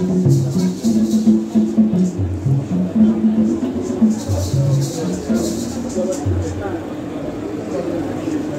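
Ceremonial group music: voices sing a low melody that steps between held notes, over a shaken rattle keeping a steady beat.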